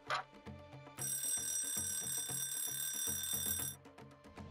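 A bell rings continuously for nearly three seconds, starting about a second in and cutting off shortly before the end, over background music with a low, even pulse. A brief whoosh comes just after the start.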